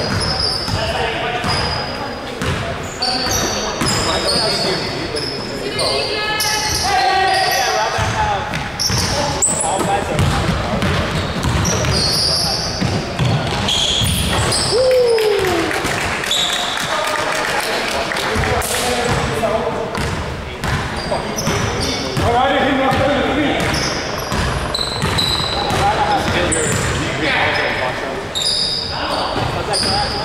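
Basketball bouncing on a hardwood gym floor during a game, with short high sneaker squeaks and players' voices calling out.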